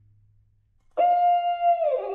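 A single loud held note enters suddenly about a second in, holds steady at a fairly high pitch, then slides downward near the end into a reverberant tail.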